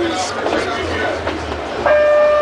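Bombardier Innovia Metro Mark I people-mover car running along its elevated guideway, heard from inside: a low rumble with a few clicks and rattles, and faint voices. Just before the end a steady tone with overtones sets in.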